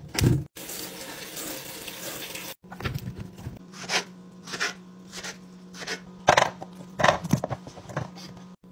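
Tap water running into a colander of strawberries for about two seconds, then a knife cutting strawberries on a wooden cutting board: a series of separate chops and knocks, loudest near the end.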